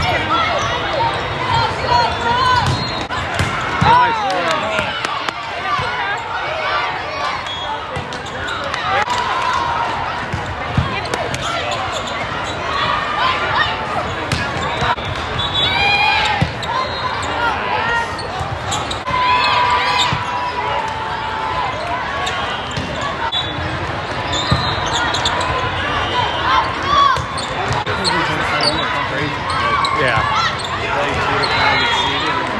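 Volleyball rally sounds in a large hall: many overlapping voices of players and spectators, with the ball being struck and shoes squeaking on the sport court.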